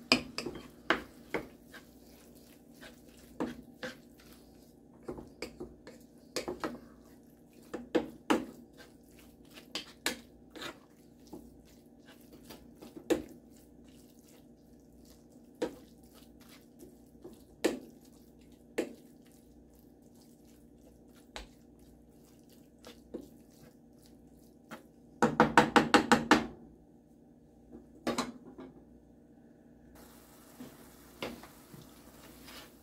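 A wooden spatula knocks and scrapes against a ceramic-coated frying pan as ground beef and onion are broken up and stirred, making irregular single knocks. Late on there is a quick run of about eight taps lasting about a second.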